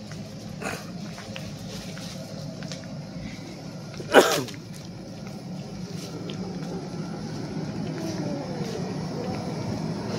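A person close to the microphone sneezes once, loudly, about four seconds in. The sneeze is short and drops in pitch as it ends, over a steady background hum.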